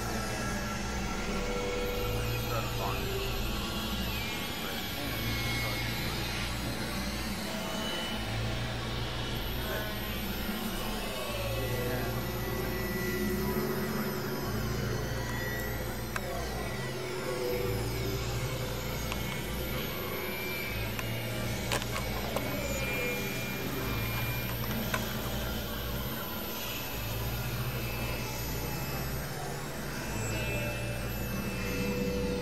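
Experimental synthesizer drone music from a Novation Supernova II and Korg microKORG XL. A thick low drone changes pitch in steps every second or two, under sliding, gliding tones and noisy textures, at a steady loudness.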